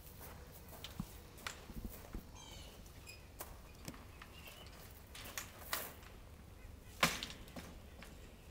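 Scattered clicks, knocks and shuffles of a wire-mesh aviary door being opened and a man stepping out with a hawk in hand, the loudest knock about seven seconds in. A brief run of high chirps about two and a half seconds in.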